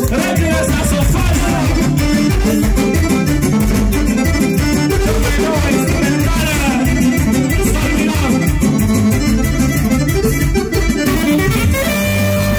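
Live band music with a steady beat, and a lead melody that bends in pitch over the accompaniment.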